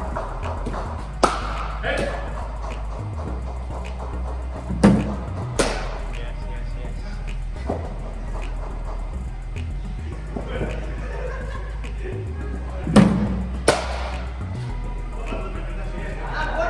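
Cricket ball and bat in nets practice against a bowling machine: three deliveries, each heard as a pair of sharp knocks about 0.7 s apart, the loudest near the middle and near the end. Under them are background music and a steady low hum.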